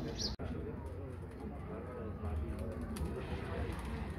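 Outdoor yard ambience of people talking in the background, with pigeons or doves cooing. The sound drops out abruptly for an instant about a third of a second in.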